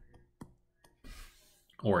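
A few faint clicks and a brief soft scratching of a stylus writing on a tablet, followed by the voice resuming near the end.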